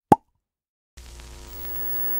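Logo-animation sound effects: a short rising pop right at the start, then about a second in a steady held synthesized chord with a hiss over it.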